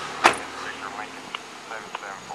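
A car door shut once with a single sharp bang about a quarter second in. Faint voices follow, with a couple of small clicks.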